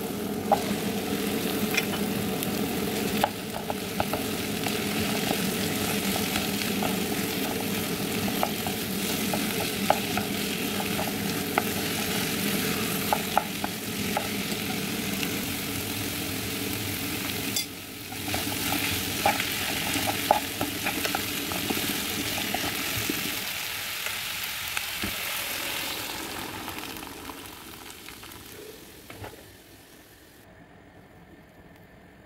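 Onion, barley and diced vegetables sizzling in a pot while a wooden spoon stirs them, with scrapes and light knocks of the spoon against the pot. The sizzling fades away over the last few seconds.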